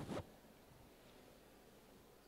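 A brief rustle of handling noise on a handheld microphone at the very start, then near silence: room tone.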